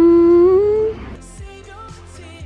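A woman's drawn-out, thinking "mmm" hum, held on one pitch and rising a little before it cuts off about a second in. Quieter background pop music follows.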